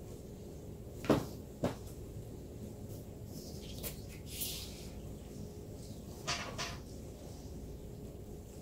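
Metal rolling pin knocking and clunking against a work table while fondant is rolled out: two sharp knocks about a second in, a few lighter ones in the middle, and another pair near the end.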